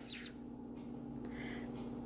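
Quiet room tone with a steady low hum. A faint, short squeak-like sound comes about one and a half seconds in.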